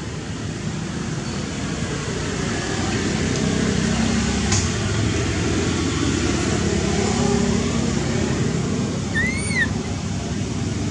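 Steady low rumble of road traffic that swells a few seconds in. Near the end there is one short, high squeal that rises and falls, from the baby macaque.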